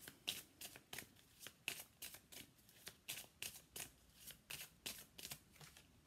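A deck of oracle cards being shuffled by hand: a run of quick, light card slaps and flicks, about three a second.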